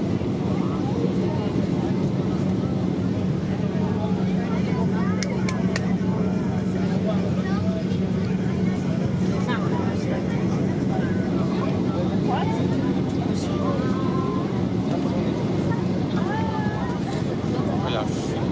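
Cabin noise of a Boeing 737-800 heard from inside, beside the wing: the steady drone of its CFM56-7B engines and airflow with a constant low hum, on the approach for landing. Faint passenger voices in the background.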